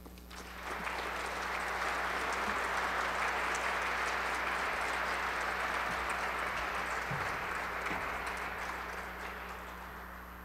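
An audience applauding at the end of a lecture. The clapping builds about half a second in, holds steady, and dies away near the end.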